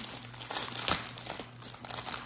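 A clear plastic packaging sleeve crinkling as hands handle the planner cover inside it, in irregular crackles.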